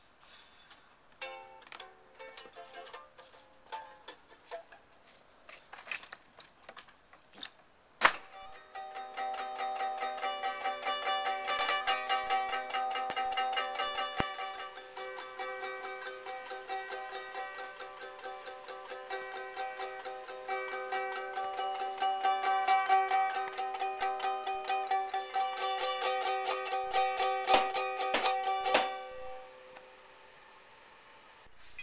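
A small acoustic string instrument played by hand: a few scattered plucks and clicks, one sharp knock about eight seconds in, then fast, continuous strumming on held chords for about twenty seconds, stopping just before the end.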